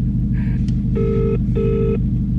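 Phone ringback tone heard through a mobile phone's loudspeaker: one British-style double ring, two short tones close together about a second in, meaning the call is ringing at the other end and is not yet answered. A steady low hum runs underneath.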